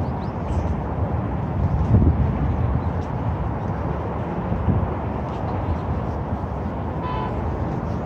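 Steady low rumble of city traffic mixed with wind on the microphone, with a short high beep about seven seconds in.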